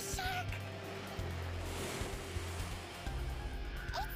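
Music with low, held bass notes, over which a soft hiss swells and fades around the middle.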